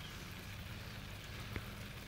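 Low, steady hiss and patter of garden sprinkler spray falling on plants, with one faint click about one and a half seconds in.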